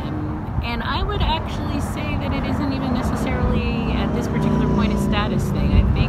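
A woman talking over a steady low rumble that runs under her voice throughout.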